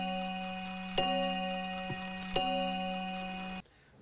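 A bell-like chiming tone, held and struck again twice, about a second and a half apart, then cut off abruptly shortly before the end.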